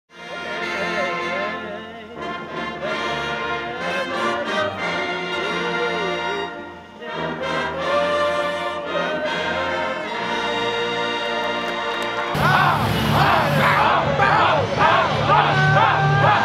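Brass band playing the national anthem, slow and sustained. About twelve seconds in it gives way to a louder, busier passage.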